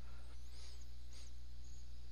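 Steady low electrical-sounding hum of the recording background, with a few faint high chirps in the first second.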